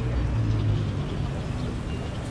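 Low, steady engine rumble of a motor vehicle running, over outdoor street noise.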